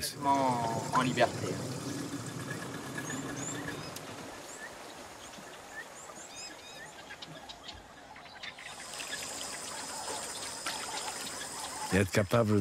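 Tropical forest ambience: scattered short bird chirps, then from about two-thirds of the way through a steady high-pitched insect drone.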